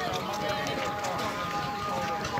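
Crowd of men talking and calling out all at once, a steady babble of many overlapping voices with scattered light knocks.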